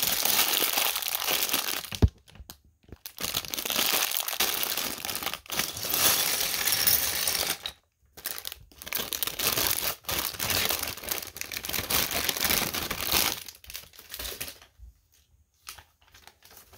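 Thin plastic LEGO parts bags crinkling as they are handled and torn open, in long stretches with short pauses and a sharp knock about two seconds in. Near the end come a few light clicks of loose plastic bricks on the table.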